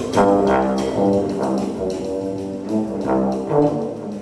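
Bass trombone and a second trombone playing held jazz notes together, a phrase of several sustained notes with a last accented note just before the sound falls away.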